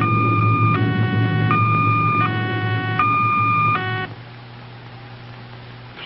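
Electronic two-tone signal sound effect, alternating between a higher and a lower tone about every three quarters of a second, over a steady low hum. The signal cuts off about four seconds in, leaving the hum.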